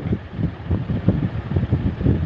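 Wind noise on the microphone: a low, uneven rumble.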